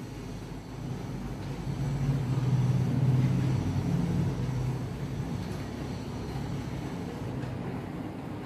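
A low, steady hum that swells a little from about two seconds in and eases back after about five seconds.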